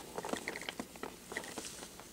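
Faint, irregular clicks and crackles of a cardboard toy box with a clear plastic window being handled in the fingers.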